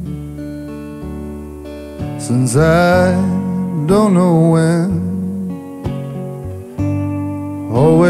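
Acoustic lap steel guitar played flat on the lap with a slide: sustained, ringing notes. A man's drawn-out sung line comes in about two seconds in and again near the end.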